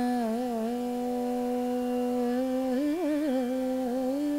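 Female Carnatic vocalist holding one long sung note in raga Neelambari, with wavering gamaka ornaments near the start and again about three seconds in, over a steady drone.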